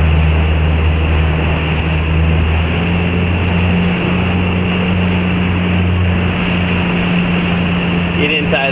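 A motorboat's engine running steadily, its pitch shifting slightly about three seconds in, over the rush of wind and choppy water splashing past the hull.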